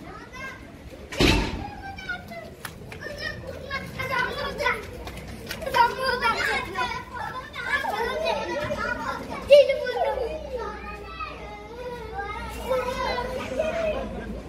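Children's voices and people talking in the street, with a sharp thump about a second in.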